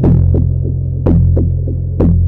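Charlatan software synthesizer playing a deep bass patch ('Just Enough Bass'): a new low note struck about once a second with a bright attack, each followed by fainter echoing repeats, the notes stepping lower about a second in.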